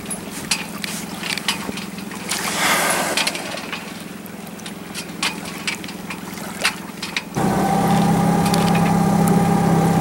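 A boat engine running steadily, with water splashing and slapping against the hull. About seven seconds in, the engine sound jumps suddenly louder, with a steady whine over the hum.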